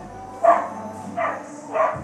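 A dog yipping three times, short high calls spaced well under a second apart.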